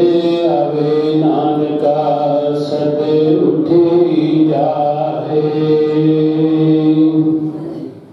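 A man singing Sikh gurbani kirtan, drawing out long, wavering melodic notes without clear words, over a steady low drone; the singing stops right at the end.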